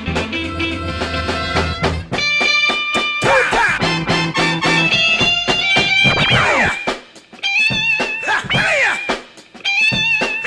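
Turntable scratching: musical samples pulled back and forth on the record so their pitch sweeps up and down in arcs, between held notes and a bass line, with short sharp cut-offs in the second half.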